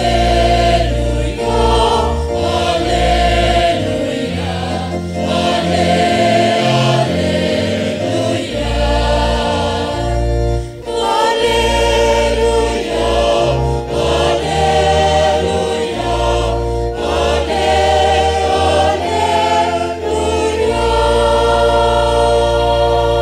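A choir singing a Christian hymn in held phrases over a sustained keyboard accompaniment with steady bass notes.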